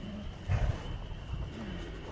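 Horses close by, with one short, low, breathy burst like a horse's snort about half a second in, over a faint low rumble.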